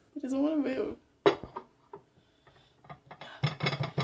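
Dishes being handled: a sharp knock about a second in, a few light clinks, then a denser clatter near the end, as a gelatin aspic is worked loose from its mold. A short vocal sound comes first.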